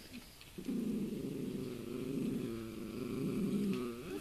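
A puppy growling low and rough, starting just under a second in and holding for about three seconds.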